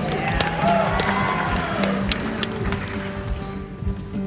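Acoustic guitar playing a live song intro while the audience cheers, whoops and claps over it; the crowd noise swells near the start and fades before the end.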